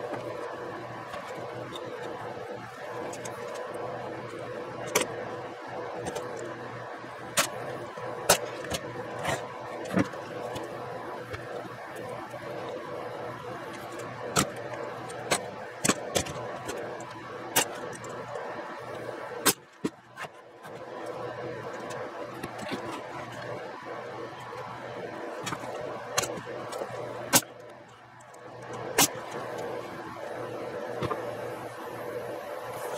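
A pneumatic air nailer driving nails into pine boards: about a dozen sharp single shots at irregular intervals, some in quick pairs, over a steady hum.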